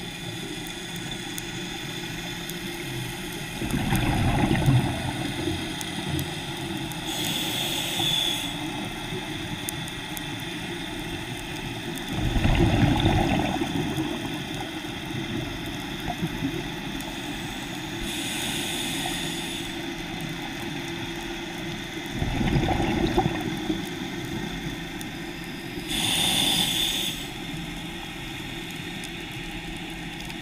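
Scuba diver breathing through a regulator underwater: three slow breaths, each a burst of exhaled bubbles followed a few seconds later by a short hiss of inhaled air, about nine seconds apart, over a steady background hiss.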